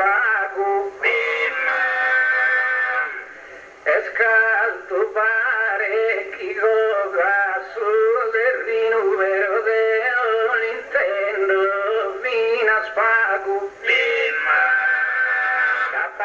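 A man's voice singing Sardinian improvised poetry in the slow, ornamented style of a gara poetica. The melody winds up and down, with long held notes about a second in and again near the end.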